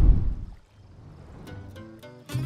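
A low cartoon thump at the start that dies away within half a second, then light plucked-string background music begins about a second and a half in.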